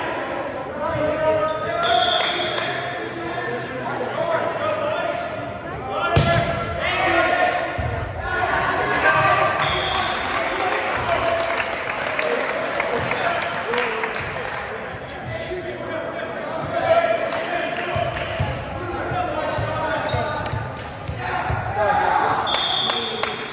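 Several voices of players and spectators talking and calling out in a large echoing gym, with sharp thumps of a volleyball being hit or bounced on the hardwood floor, the clearest about six seconds in and another near seventeen seconds.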